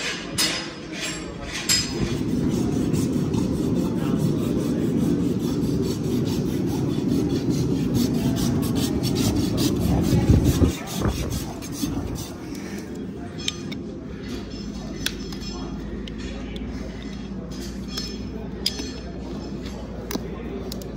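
Hoof trimming on a pony's overgrown hoof: sharp clicks and scraping from hoof nippers and a hoof knife. A steady low rumble runs through the first half and cuts off abruptly about ten seconds in, after which single clicks of cutting come every second or two.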